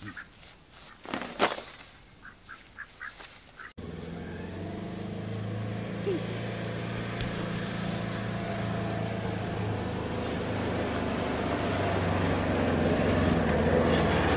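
Polaris Ranger side-by-side utility vehicle running as it drives toward the listener, growing steadily louder over about ten seconds. Before it starts, a few light clicks and knocks.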